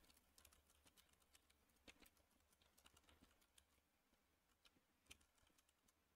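Very faint computer keyboard typing: scattered, irregular keystrokes.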